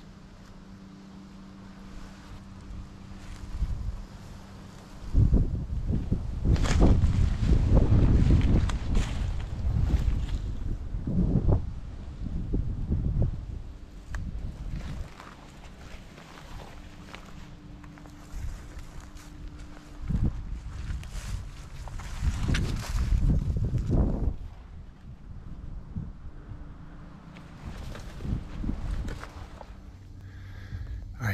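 Wind buffeting a head-mounted action camera's microphone in gusts, loudest from about five seconds in and again near twenty seconds in, over rustling footsteps through dry grass and brush.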